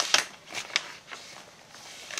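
A thick paper page of a handmade junk journal being turned by hand: a few short paper rustles and taps, mostly in the first second.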